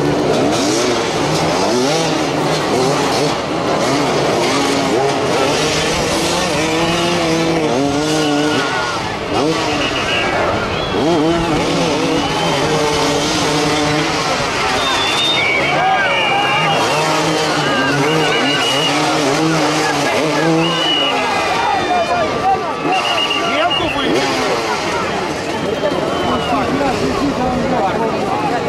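Several motoball motorcycles' engines idling and blipping, with many pitches overlapping and rising and falling as riders rev and ease off.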